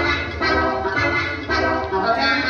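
Upbeat dance music with repeated chords about twice a second.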